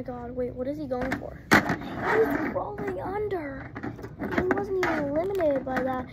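A child's voice making wordless vocal sounds, long sung tones that slide up and down in pitch, as play sound effects. A single sharp knock comes about a second and a half in.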